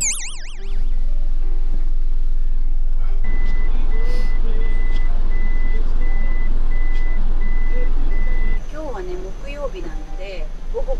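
A camper van's reversing beeper sounding in steady even beeps, about one every 0.7 s, over the low running of the Toyota Coaster's engine, heard from inside the cab. The beeps start about three seconds in and stop shortly before the end. A short warbling electronic sound effect plays at the very start.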